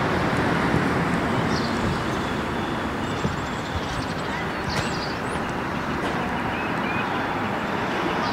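Steady outdoor road-traffic noise, with a few short high bird chirps over it.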